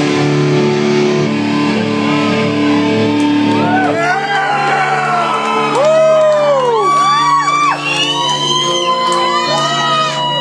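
Live electric guitars holding a ringing chord as the drums stop, the low end dropping away and the chord shifting about four seconds in, with shouts and whoops rising and falling over it from the middle on.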